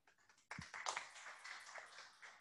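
Light applause from a small audience, starting about half a second in, with a dull low thump at its onset.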